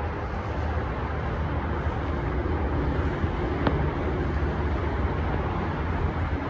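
Steady outdoor background rumble, strongest in the deep lows, with a faint click about three and a half seconds in.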